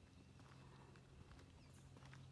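Near silence: faint outdoor background with a low steady hum and a few faint ticks.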